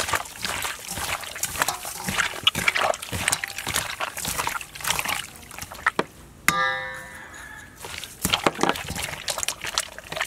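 Wet squelching and sloshing of raw pig stomach being kneaded and scrubbed with salt by hand in a stainless steel bowl, in a run of irregular squishes. About six and a half seconds in there is a sharp click followed by a short pitched tone lasting just over a second.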